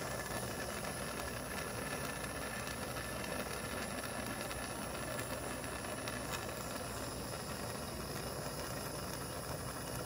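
Handheld gas torch burning with a steady hiss, its flame held on a crucible of melting gold.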